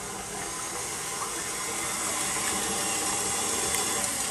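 KitchenAid stand mixer running with its wire whisk beating egg whites in a stainless steel bowl: a steady whirring hiss that grows slightly louder as the whites turn foamy.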